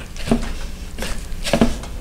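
A paintbrush being cleaned in a container of odorless mineral spirits: about three soft, wet knocks and swishes spaced over two seconds.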